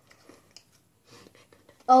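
Faint, irregular crunching clicks of a Cheeto being chewed, followed by a spoken "Oh" right at the end.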